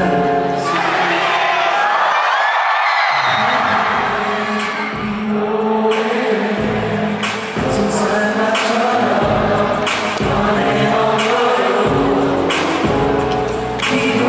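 A male vocalist singing live into a handheld microphone over amplified backing music with a steady beat; the bass drops out briefly about two seconds in.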